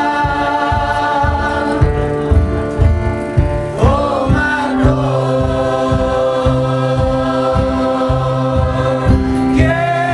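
Live folk song: a group of voices singing together in held notes over strummed acoustic guitar, with a steady low beat underneath. A voice slides up in pitch about four seconds in.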